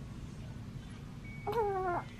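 A young baby cooing once, a short high-pitched sound that falls slightly in pitch, about one and a half seconds in.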